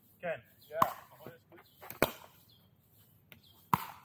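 Pickleball paddles striking the ball in a warm-up rally: three sharp knocks, roughly a second or more apart, with a couple of fainter taps between them.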